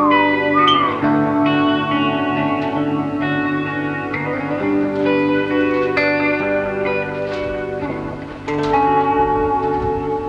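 Solo electric guitar played through a small amp, with a bright, treble-heavy tone: ringing chords and picked notes that change about once a second. A high wavering note bends down in the first second, and the playing dips briefly before a fresh chord rings out about eight and a half seconds in.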